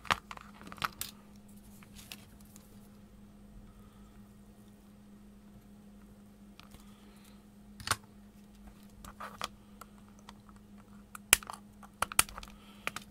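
A handful of scattered sharp clicks and taps as a small circuit board and hand tools are handled and set down on a cutting mat during soldering, the loudest near the end. A steady low hum runs underneath.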